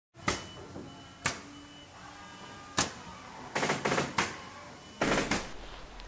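Sound effects of an animated countdown intro: a few sharp hits with faint lingering tones between them, a quick run of hits about three and a half seconds in, and a last short burst at about five seconds.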